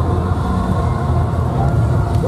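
Steady low rumble from a yosakoi team's decorated sound truck rolling past close by.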